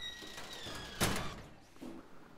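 A single sharp bang or thud about a second in that dies away quickly, after a thin steady high tone fades out.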